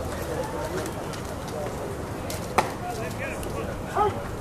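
Open-air ballpark ambience with faint voices and bird chirps. A single sharp pop comes about two and a half seconds in, as a pitched baseball smacks into the catcher's mitt, and a lighter knock follows near the end.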